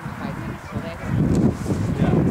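Geese honking, a few short calls over wind noise on the microphone.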